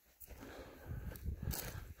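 Footsteps on dirt and rock, with a few faint scuffs and clicks over a low uneven rumble.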